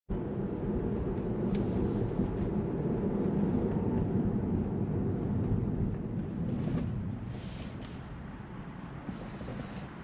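Tyre and road noise heard inside a Tesla's cabin as it drives, a steady low rumble that drops in level about seven seconds in as the car slows for a crosswalk, with a few brief swishes.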